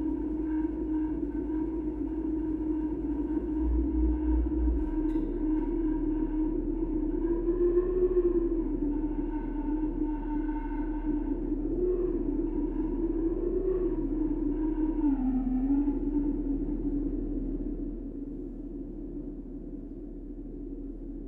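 Soft electronic drone of sine tones and filtered noise: one steady low tone with fainter higher tones above it. Its pitch wavers gently up and down through the middle, and it drops in level near the end.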